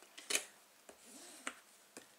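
A few light clicks and taps of small craft tools being handled and put down on a cutting mat, four in two seconds, the first the loudest.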